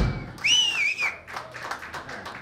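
Live audience reacting as a rock song ends: one loud, wavering two-finger-style whistle lasting under a second, then scattered hand clapping.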